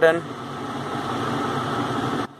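Steady background hum and hiss, like an air conditioner or fan running, with no distinct clicks.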